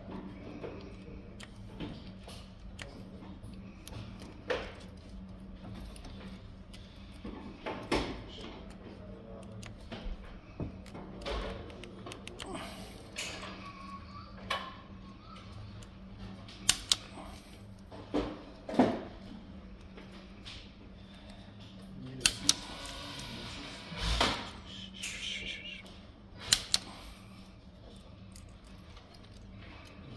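Spring-loaded punch-down insertion tool snapping as it seats and trims wires in an RJ45 jack: several sharp clicks, most in quick pairs, among softer handling and wire-rustling noises. A low steady hum runs underneath.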